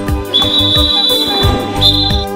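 Background music, with a high, steady whistle tone held for about a second and a half that steps slightly higher near the end.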